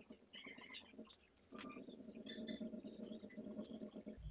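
Faint small clicks and scratchy rustling from handling a metal rhinestone stone chain while it is laid onto a glued fabric piece, over a low steady hum.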